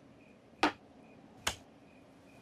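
Two sharp clicks almost a second apart, the first the louder, over crickets chirping steadily in the background.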